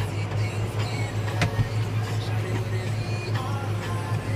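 Valtra N111 tractor's engine running steadily while mowing, with music playing along with it. There is a single sharp click about a second and a half in.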